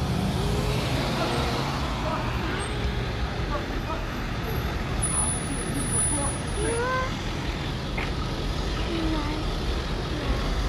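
City street traffic: a steady low rumble of passing car engines and tyres, with faint distant voices mixed in.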